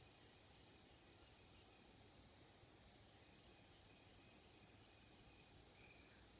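Near silence: a faint steady hiss, with a faint thin high tone coming and going.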